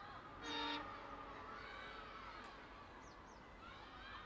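A single short locomotive horn toot, about half a second long, close to the start: the air horn of an EMD WDP4 diesel locomotive. Faint bird calls continue around it.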